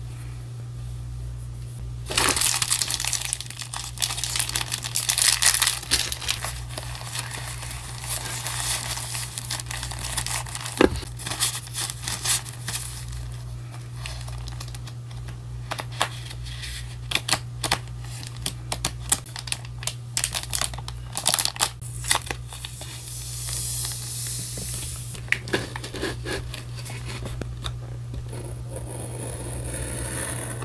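Packaging and paper crinkling and rustling under hands, with a long, loud run of crinkling early on and then scattered rustles and small sharp taps. A steady low hum runs underneath.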